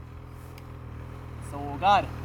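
Snowmobile engine idling with a steady low hum, and a short spoken word near the end.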